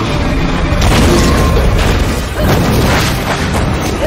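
Loud movie sound effects of a giant monster charging a vehicle through sand: a continuous deep rumble with several booming impacts, over a music score.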